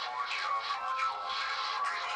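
Rap music track playing back from a music video, thin and with almost no bass.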